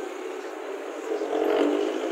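Street traffic: a motor vehicle's engine running close by, swelling louder about a second and a half in.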